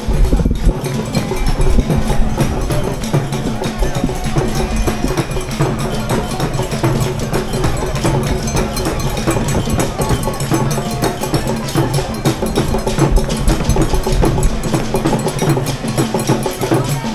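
Music driven by drums and other percussion, a steady stream of fast strokes.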